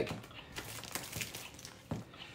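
Loose plastic LEGO pieces and a plastic parts bag being handled: faint crinkling with scattered small clicks, and a sharper click near the end.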